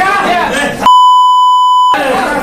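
Men's raised voices in a crowded scuffle, cut off just under a second in by a loud, steady, one-second beep that replaces all other sound: a broadcast censor bleep laid over the footage.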